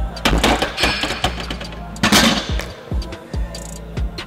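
A loaded barbell being racked on a bench press. The bar and its iron plates rattle, then clank loudest about two seconds in, over background music with a deep thudding beat.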